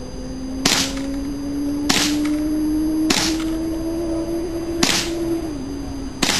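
Rifle shots fired in quick succession, four in all, about a second to two seconds apart, over a steady hum that slowly rises in pitch.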